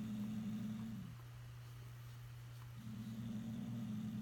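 House cat growling low in a warning standoff with another cat: one long growl that stops about a second in, then another that starts near three seconds and runs on.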